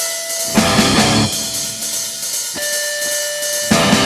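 Rock band playing live: an electric Les Paul-style guitar holds sustained notes over cymbal wash, with drums and the full band hitting hard about half a second in and again near the end.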